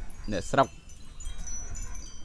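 Hanging wind chime ringing, with several thin, high notes overlapping and sustained.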